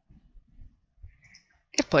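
Faint, scattered clicks of a computer mouse being worked at a desk, followed near the end by a man's voice starting to speak.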